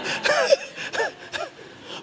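Breathy, gasping laughter in a few short bursts that tail off near the end.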